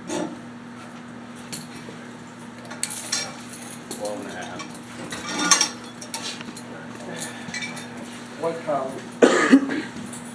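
Light metallic clinks and taps from a steel height-measuring wicket, its crossbar being set down over a beagle's shoulders on a measuring board, with a steady low hum underneath.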